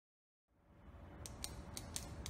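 Intro sound effect for a title card: a low rumble fades in, then a quick, uneven run of sharp clicks, about four in the space of a second, as the text appears.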